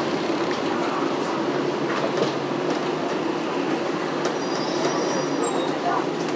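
Steady running noise heard inside a bus: engine hum and cabin rumble. A few faint high squeaks come in the second half.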